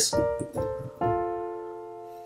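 Piano played in three separate strikes, the last chord held and fading away: an example of a choppy, uneven right-hand shift that should be played smoothly.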